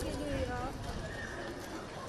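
Outdoor ambience with people's voices talking indistinctly in the background, over a low rumble and a few faint clicks.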